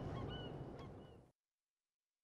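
Short, repeated bird calls over a rushing background ambience, fading out a little over a second in and leaving silence.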